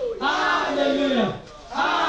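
A woman praying aloud into a microphone in loud, shouted phrases about a second and a half long, each ending on a falling pitch.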